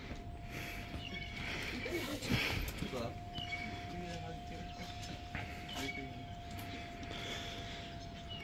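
Faint, murmured voices and soft breaths, too quiet to make out words, over a thin steady tone.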